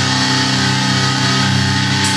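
Heavily distorted electric guitars and bass holding a low, droning chord with almost no drumming, in a live metal band's set.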